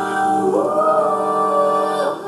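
Live contemporary jazz: a female vocalist sings a long held note, gliding up about half a second in to a higher note that she holds until the end.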